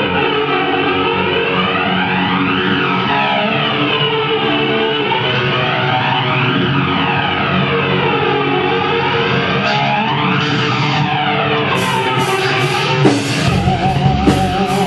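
Live rock band playing loud sustained electric guitar and bass chords, run through a sweeping effect that rises and falls every couple of seconds. Near the end, fast regular cymbal strokes come back in.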